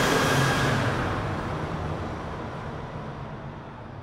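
Intro sound effect: a loud rush of noise that peaks right at the start and slowly fades away, with a low rumble underneath.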